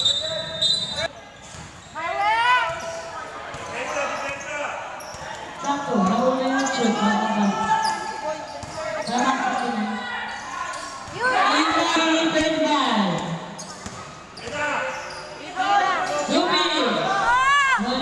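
A basketball being dribbled and bounced on the court floor during live play, under players and spectators calling and shouting.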